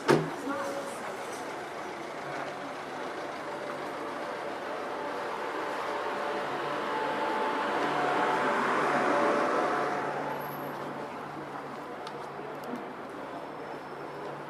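A road vehicle passing on a city street: its noise swells to a peak about eight or nine seconds in, then fades, with a steady low engine hum beneath. A sharp knock right at the start.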